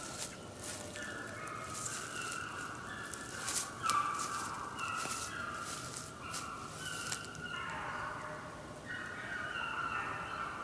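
A pack of deer hounds baying in the distance while running a drive: many drawn-out, overlapping cries. Close rustling crackles through the first seven seconds or so.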